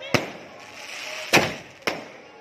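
Fireworks going off: three sharp bangs, one just after the start, the loudest a little past halfway, and a third about half a second after it, each with an echoing tail.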